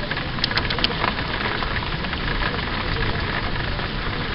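Wind-driven rain against a window: a steady rushing hiss, with a quick run of sharp ticks about half a second in.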